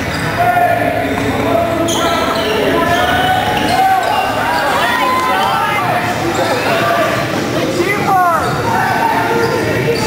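Basketball being dribbled on a hardwood gym floor among the shouts of players and spectators in a large echoing gym, with a quick squeak of sneakers about eight seconds in.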